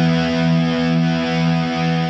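Rock music: a heavily distorted electric guitar holds a sustained chord that pulses about three times a second.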